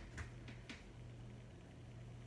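Quiet room tone with a steady low electrical hum and two faint, short clicks in the first second.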